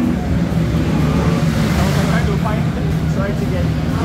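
Ducati V4S motorcycle engine running steadily in onboard track footage played back through a TV's speakers, with a rush of wind noise swelling midway. Faint voices come in near the end.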